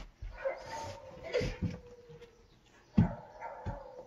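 Young boy whimpering in a long, thin, drawn-out whine, with a single thump about three seconds in.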